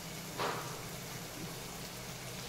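Oil sizzling softly and evenly in an aluminium pot of frying diced potatoes and green beans, with one brief louder burst about half a second in.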